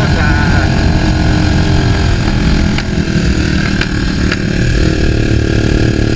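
Motorcycle engine running steadily while riding, a dense low rumble with a few light clicks near the middle; the engine note changes to a steadier hum about five seconds in.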